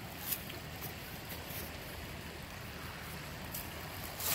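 Quiet outdoor background: a steady low rumble and faint hiss, with a few faint crackles.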